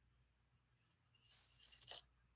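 A high-pitched, steady hiss or trill that fades in just before the middle, grows loud and lasts a bit over a second, cutting off at the end.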